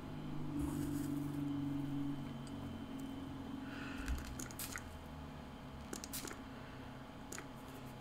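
Faint handling sounds at a craft desk: a low steady hum over the first few seconds, then a few light clicks and rustles as hands move art materials.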